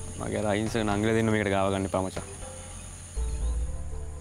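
Steady high-pitched chirring of insects throughout. A man's voice is heard briefly near the start, over soft background music.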